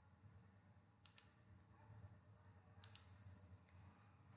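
Near silence with a faint low hum, broken by two faint computer mouse clicks, each a quick double click, about a second in and again just before three seconds.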